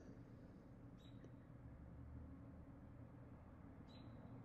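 Near silence: room tone with a faint steady low hum and two faint short high ticks, about a second in and near the end.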